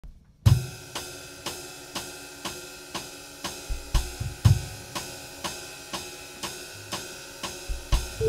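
Jazz drum kit played alone as an intro: cymbal strokes at a steady pulse of about two a second, starting about half a second in, with a few low bass drum hits underneath.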